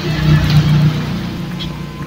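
A motor vehicle's engine running, a steady low hum that is loudest about half a second in and eases off toward the end.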